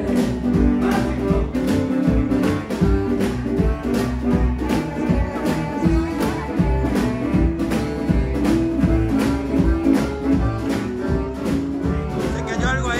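Live swing band playing an instrumental passage: guitar over upright bass and drums, with a steady beat.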